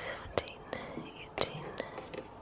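Quiet whispered speech over a hand brushing and tapping the cardboard of a chocolate advent calendar, with a couple of short taps.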